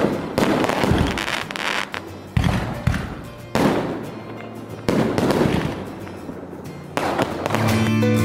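Fireworks going off: a series of sharp bangs at uneven intervals, each followed by a fading hiss and crackle. Music starts near the end.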